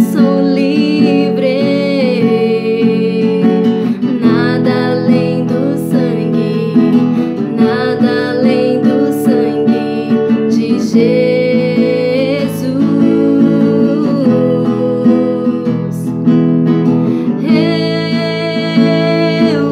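A young woman singing while strumming chords on a classical guitar, her voice coming in phrases with short breaks over the steady strummed accompaniment.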